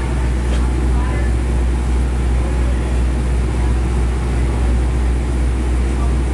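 Steady low mechanical hum, constant in level throughout.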